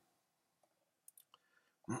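Near silence with a few faint clicks about a second in, then a man's cough starting just before the end.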